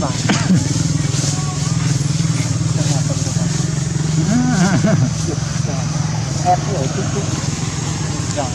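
A steady low drone from a small engine runs underneath, with brief snatches of voices, the clearest about four to five seconds in.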